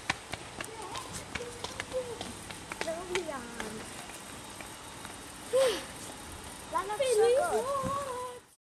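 Indistinct high-pitched voices heard a few times, loudest near the end, over a hum of background noise with scattered clicks of handling and footsteps on a hard shop floor.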